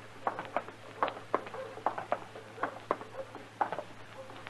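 Radio-drama footstep sound effect: steps walking at an even pace, about two a second, each a short sharp knock on a hard surface.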